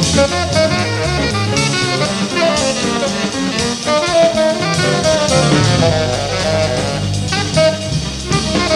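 Small jazz group playing live: a tenor saxophone line over piano, double bass and drum kit with cymbals.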